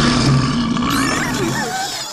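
Cartoon manticore roar sound effect: one long, rough roar that fades out near the end.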